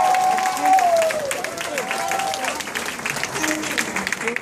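Audience clapping, with voices calling out over the applause; one long held call falls away about a second in.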